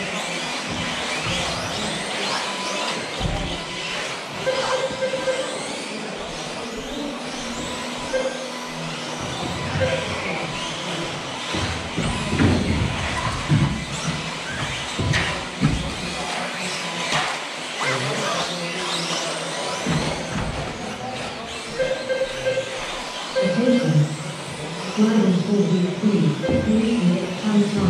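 Several electric 1/10-scale 2WD off-road RC buggies racing on an indoor astroturf track, their motors whining up and down in pitch as they accelerate and brake, echoing in a large hall.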